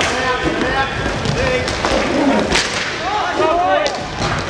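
Inline hockey game sound in an indoor rink: players and spectators shouting over a steady background din, with sharp cracks of sticks on the puck, the loudest about two and a half seconds in and just before the end.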